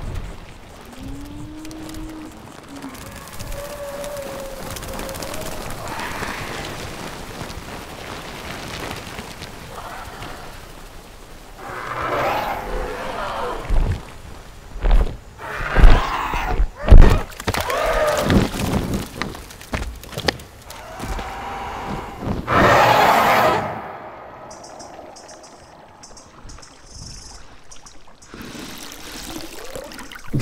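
Film sound design of prehistoric creatures over score music. A low gliding call comes in the first few seconds. From about twelve seconds in there is a stretch of loud pterosaur-like screeching calls broken by several heavy booming thuds, and it dies down to a quieter passage near the end.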